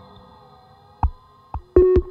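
Buchla Red Panel modular synthesizer patch: ringing electronic tones die away, leaving a faint steady hum of tones. A single short plucked note sounds about a second in. Near the end, a quick run of short plucked synth notes at changing pitches begins.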